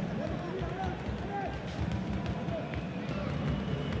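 Faint, distant shouting voices carrying across a near-empty football stadium, over a steady low rumble of background noise.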